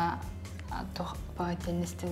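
Speech only: a woman talking quietly, over a steady low background hum.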